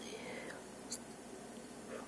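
A woman whispering faintly over low room hiss, with one small sharp click about a second in.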